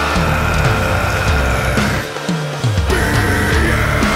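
Progressive metal music: heavy distorted electric guitar riffing in a full band mix, with a long held high note above it. The low end drops out for about half a second just after two seconds in, then the riff comes back in.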